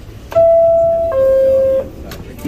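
A New York City subway car's door chime: two steady electronic tones, the second lower than the first, each held about three quarters of a second, signalling that the doors are closing.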